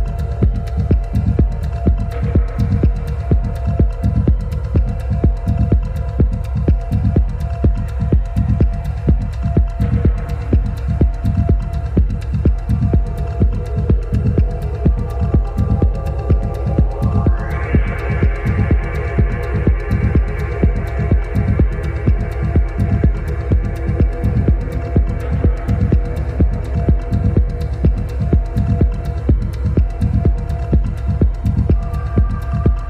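Deep, hypnotic techno: a steady kick drum at about two beats a second under droning synth tones, with a rising synth sweep a little past halfway.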